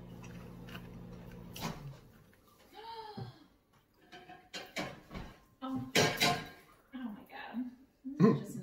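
A microwave oven running with a steady hum, which stops just under two seconds in. It is followed by a series of kitchen clatters and knocks, loudest about six seconds in, like dishes and a door being handled.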